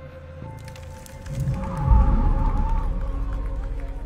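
Dramatic film score with a sudden loud, deep boom about two seconds in that rumbles on and slowly fades.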